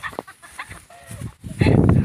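A few faint, short calls bending in pitch, chicken-like, then from about one and a half seconds in a loud low rumble of wind and handling on the phone's microphone.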